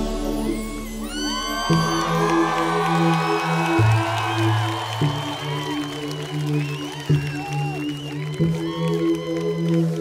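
A live band holding slow, sustained chords, the low note changing every second or two, with whoops and cheers from the audience over it.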